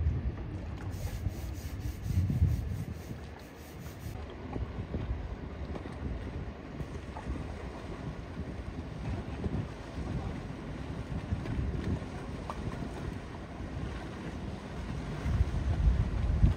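Gusty wind buffeting the microphone over the low rumble of a motor yacht cruising past and the wash of its wake.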